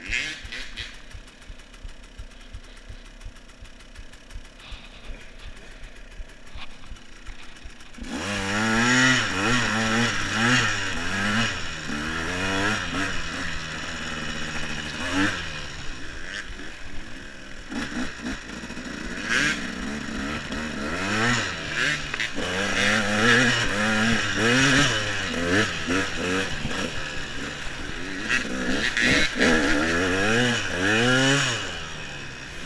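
KTM EXC enduro motorcycle engine, low and quiet for the first eight seconds or so, then revving up and down repeatedly as the throttle is opened and closed while riding.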